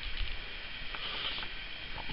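Low steady background hiss with a few faint soft rustles and ticks, with no distinct event.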